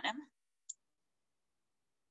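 A woman's voice ending a word, then a single brief click just under a second in, followed by near silence.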